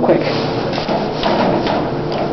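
Otis hydraulic elevator running steadily as the car rises, with a few light clicks as the alarm button is pressed. No proper alarm bell sounds: the car's alarm is not working.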